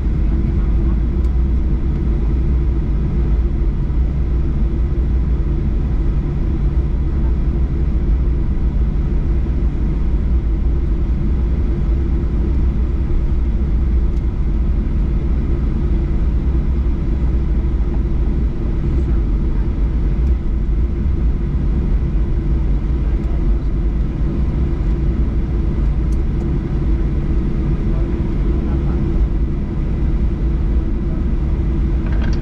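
Cabin noise inside a Boeing 737-800 taxiing after landing: a steady low rumble from the CFM56 engines at low power and the airframe rolling, with a few faint steady tones above it.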